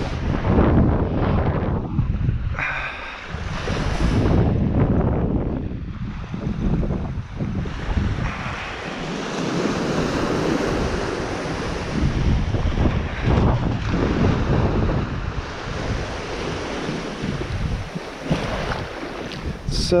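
Small surf waves washing up and draining back on a sandy beach, rising and falling every few seconds, with wind buffeting the microphone.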